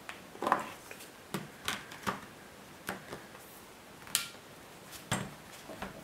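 Light plastic knocks and clicks of a Medion Akoya E1210 netbook's case being handled, turned over and set down: about ten short, irregularly spaced taps.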